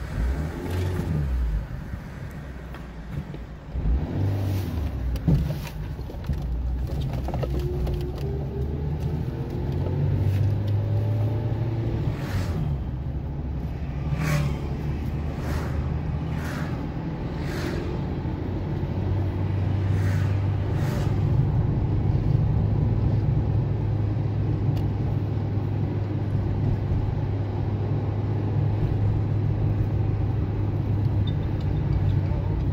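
Car driving, heard from inside the cabin: a steady low engine and road hum, with the engine note rising as the car speeds up several seconds in. Several sharp knocks or clicks come in the middle.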